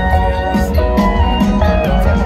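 Live band playing an instrumental passage, guitar over steady bass and drums, recorded on a phone from the audience.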